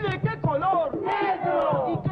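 A group of voices chanting "¡Negro!" together in Spanish, with a woman's voice reciting over a steady clapped beat, from the soundtrack of a recorded poetry-and-dance performance.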